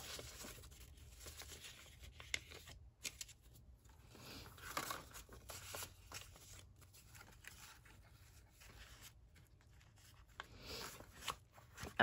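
Faint rustling and soft taps of paper being handled: folded ledger-paper inserts being opened, slid and tucked into a journal's pages, with a few brief louder rustles and a little more near the end.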